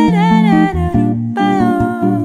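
Jazz duo of female voice and Epiphone Elitist Byrdland archtop guitar: the singer holds two long wordless notes, the second starting about a second and a half in, while the guitar plays changing single low notes and chords underneath.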